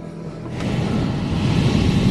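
A low, rumbling whoosh sound effect that swells in about half a second in and keeps building: a sword's magical energy charging up.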